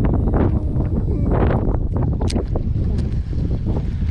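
Wind buffeting the microphone, a loud steady low rumble, with a few short clicks on top.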